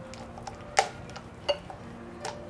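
A hand beating a thick gram-flour batter in a glass bowl, giving soft wet slaps and clicks, two sharper ones a little under a second in and at about one and a half seconds.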